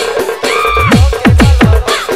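Electronic DJ dance remix of a Purulia Jhumur song in Tapa Tap style: quick runs of bass drum hits that each drop sharply in pitch, over a steady synth note. A short high held tone sounds about half a second in.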